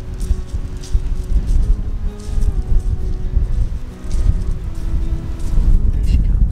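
Wind buffeting the microphone in a loud, gusting low rumble, with soft background music of held notes underneath.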